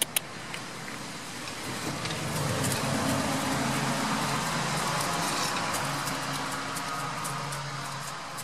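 A passing road vehicle: a rushing noise that swells over a couple of seconds and then slowly fades away. Two sharp clicks come at the very start.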